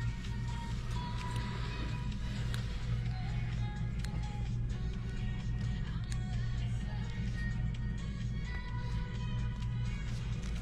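Faint background music over a steady low hum, with a few light clicks of metal instruments being handled.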